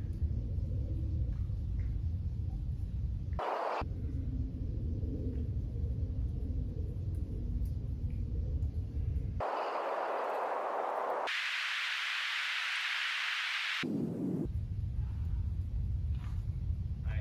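Steady low rumble of wind on the microphone. It is cut off abruptly several times by a plain hiss with no low end, once briefly about three seconds in and then for about five seconds in the second half.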